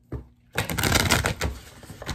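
A deck of oracle cards being shuffled by hand: a single tap, then about a second of rapid, dense flapping and clicking as the cards slide over each other, easing off near the end.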